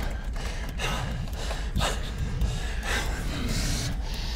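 A person gasping, sharp noisy breaths coming about a second apart, over a steady low rumble.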